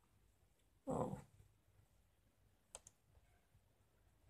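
A brief vocal sound about a second in, then two quick computer-mouse clicks close together near the end, otherwise near quiet.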